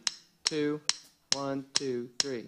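A drummer's count-in: sharp clicks about twice a second, each followed by a short spoken count word in a man's voice.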